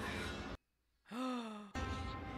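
A woman's short sighing vocal sound, falling in pitch, about a second in. Before and after it runs a low, rumbling film soundtrack, which cuts out for a moment just before her sigh.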